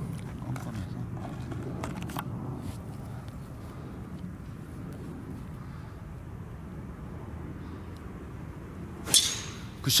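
A golf driver striking a teed ball: one sharp crack near the end, over a steady low background rumble.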